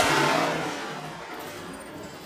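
A blow to a wrecked piano's exposed strings and frame: a sharp crash, then a jangling ring of strings and loose parts that dies away over about a second and a half.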